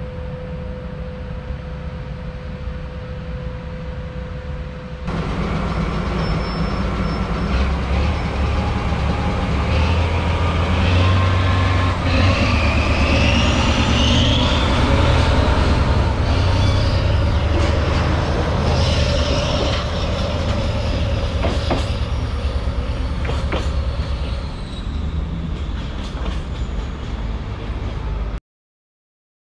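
Freight trains in a rail yard. First a container train hauled by an electric locomotive passes with a steady tone over a low rumble. After a cut about five seconds in, a diesel shunting locomotive runs close by; its engine rumble swells in the middle, with a high wheel squeal.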